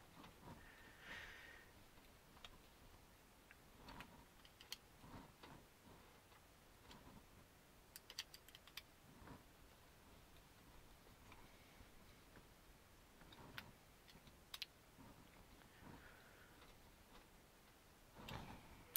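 Faint, scattered clicks of a small Phillips screwdriver tightening screws into the metal bevel ring gear of a model RC truck's front differential, over near-silent room tone. A short cluster of clicks comes about eight seconds in.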